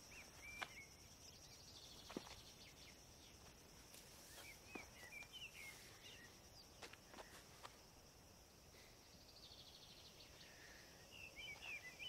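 Faint outdoor ambience: a steady high insect drone, with a few short bird chirps and occasional soft clicks.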